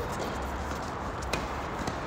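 Tennis rally: a tennis ball struck by racket and bouncing on a hard court, a sharp pop a little past halfway through and a softer one just before the end, over a steady low rumble.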